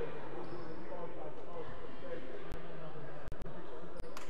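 Indistinct voices of players and spectators talking in a large, echoing indoor sports hall. The sound drops out for an instant a few times near the end.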